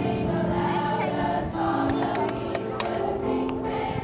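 Middle school choir singing in many voices, with electronic keyboard accompaniment, sustaining and changing notes together.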